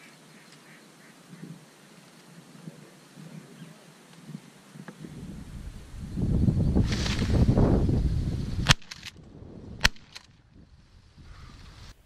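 Ducks and geese calling over a decoy spread, mixed with rushing wind on the microphone, building to a loud swell for a few seconds and then cutting off abruptly. Two sharp cracks follow about a second apart.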